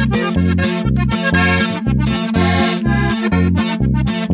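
Norteño corrido music with no singing: an accordion plays the melody over guitar and bass keeping a steady two-beat rhythm.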